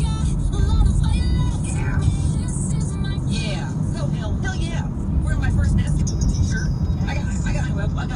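Car interior noise while driving at road speed: a steady low rumble of tyres and engine, with a voice and music over it.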